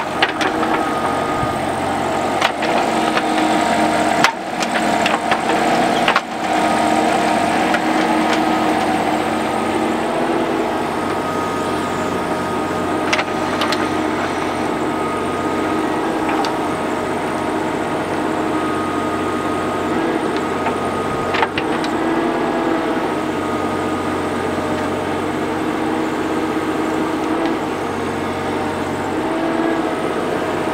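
Kubota mini excavator's diesel engine running steadily under hydraulic load as the boom and bucket work. Sharp knocks come several times in the first few seconds and a couple of times later, as the bucket scrapes and drops dirt and rocks.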